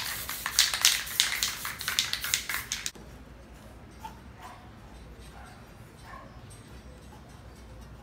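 Aerosol spray-paint can sprayed in a rapid run of short hissing bursts for about three seconds, then stopping; a quiet stretch follows with a few faint short sounds in the distance.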